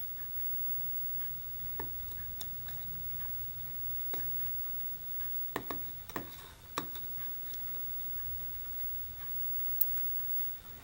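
Scattered light clicks and taps of tweezers as small brass photo-etched parts are fished out of a plastic cup of rinse water and set down on a paper towel, with a cluster of clicks a little past the middle and one near the end. A faint steady low hum sits underneath.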